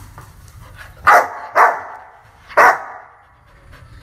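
A large tan dog barking three times: two barks close together about a second in, then one more about a second later, each with a short echo after it.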